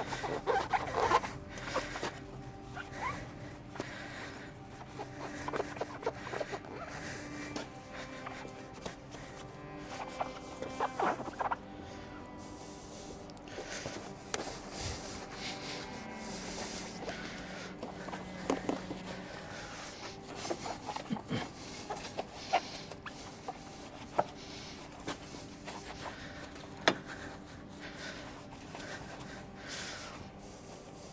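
Hand scrubbing and wiping on a motorcycle's wheel and bodywork while cleaning it: irregular rubbing and scratching strokes with a few sharp clicks, over quiet background music.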